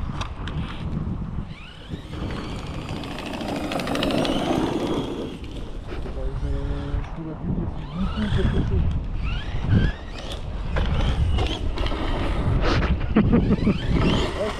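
Brushless electric motor of a large radio-controlled truck whining, rising in pitch several times as it accelerates, over steady wind rumble on the microphone.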